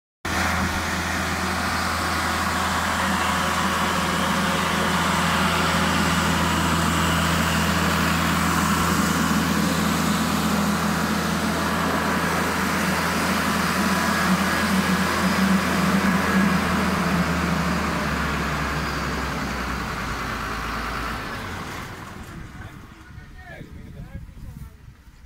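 Diesel engine of a hydraulic stringing machine (puller-tensioner for transmission-line conductor) running loud and steady, then slowing and winding down over the last few seconds.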